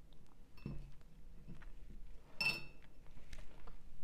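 Two light clinks with a brief ring, about half a second and two and a half seconds in: a paintbrush knocking against a hard container.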